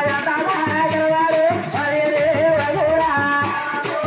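Live folk dance music: a high, wavering melody line over drumming and a steady jingling, rattle-like beat.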